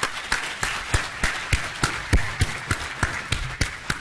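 Audience applauding, with one person's close, sharper claps about three a second standing out over the crowd's clapping.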